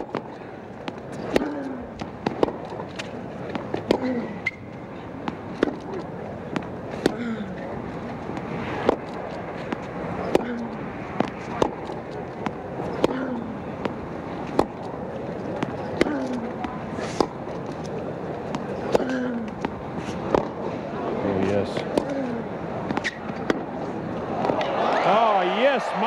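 Tennis rackets striking the ball in a long baseline rally, a sharp pop about every one and a half seconds over steady crowd murmur. Crowd noise swells near the end as the point finishes.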